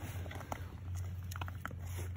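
Scattered small crunches and clicks on snow-crusted ice over a steady low rumble.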